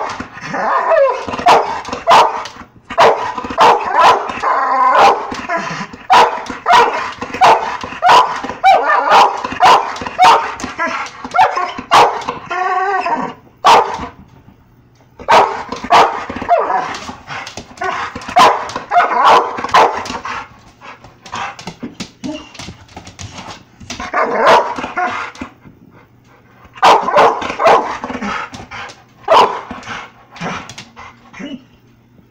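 Pit bull barking in rapid runs of sharp barks at a laser pointer's dot, pausing briefly about halfway through and again shortly before the end.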